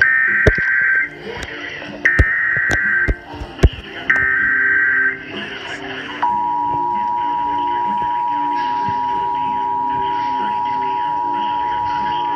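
Emergency Alert System broadcast alert: three shrill, screeching digital header bursts, each about a second long with a short gap between them. About six seconds in, the steady two-tone attention signal (853 and 960 Hz) starts and holds. Heard through a computer's speakers, with music running underneath.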